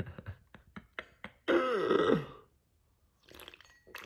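A man drinking from an aluminium energy drink can: small clicks and sips at the rim, then a short voiced sound from his throat that falls in pitch, about a second and a half in. Faint gulping follows near the end.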